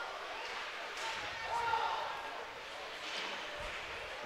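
Ice hockey rink during live play: a steady hiss of arena and skating noise, faint voices from the crowd, and a few faint knocks.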